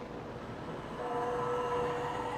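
A sustained drone of several steady tones held together as a chord over a hiss. It thins out and then swells back louder about a second in.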